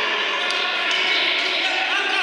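Futsal being played in a sports hall: indistinct shouting from players, with a couple of sharp knocks of the ball and feet on the wooden floor.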